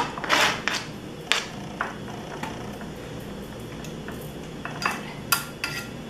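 A kitchen knife scraping and tapping on a plastic cutting board as diced ham and cheese are pushed off into a glass dish. Short scrapes and knocks cluster in the first second or so and again near the end, with quieter handling between.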